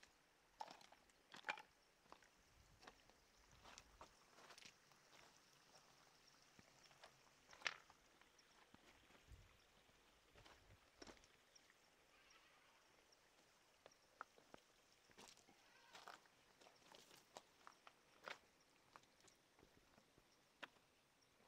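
Near silence with faint, irregular clicks and knocks of footsteps on loose rock and gravel, the loudest about eight seconds in.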